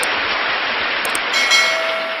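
Intro-animation sound effects: a loud, steady rushing whoosh, with short sharp clicks at the start and about a second in, and a ringing chime-like tone coming in near the end as the whoosh fades.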